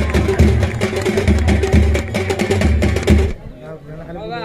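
Background music with a heavy bass beat, about two thumps a second, that cuts off suddenly a little over three seconds in. Faint voices follow.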